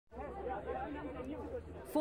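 Indistinct chatter of many people talking at once in a room, over a low steady hum.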